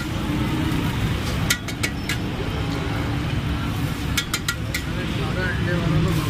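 Metal spatula clinking and scraping on a large flat iron griddle as kabab patties are lifted onto buns, in clusters of sharp clicks about a second and a half in and again around four seconds. Under it runs a steady background of street traffic and voices.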